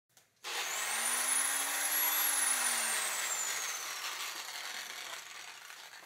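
Whooshing sound effect: a hissing rush that starts suddenly, with a tone that glides up and then slowly back down, fading away over several seconds.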